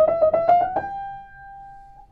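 Feurich 122 upright piano: a quick run of treble notes played either side of the treble break, stepping slightly up in pitch, ending on a held note that rings and fades away.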